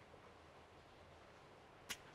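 Near silence: room tone, with one brief click just before the end.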